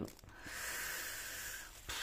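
Soft steady plastic hiss for about a second and a half, ending in a light click: stiff plastic floss-organizer cards sliding out of a small plastic bag.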